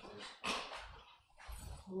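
Soft, breathy noise with a short hiss about half a second in, then near the end chanting voices begin on a held note: the sung response that follows the Gospel reading in an Orthodox liturgy.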